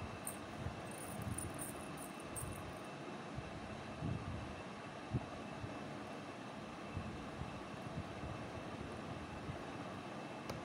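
Steady background hum and hiss of room noise, with a few faint soft taps in the second half as the crochet work is handled.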